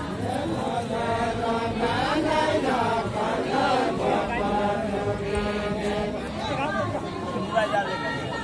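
A group of voices singing a deuda folk song together in a chant-like melody, the singing of the Far-Western Nepali linked-arm circle dance.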